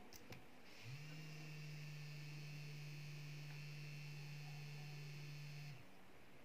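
Small vibration motor, driven by an Arduino at about 60% PWM, buzzing steadily for about five seconds: it spins up about a second in and cuts off near the end, its timed run set off by the pressure sensor passing its threshold. Two soft clicks come just before it starts.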